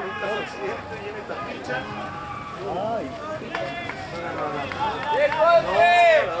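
Spectators' voices at a sports ground: several people talking and calling out, with louder shouting near the end.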